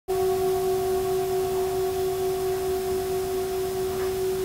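Metal singing bowl ringing: one steady tone with two fainter higher tones above it, its loudness wavering slightly.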